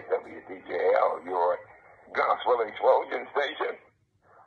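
Speech: a man talking in short phrases, with a brief pause about halfway through.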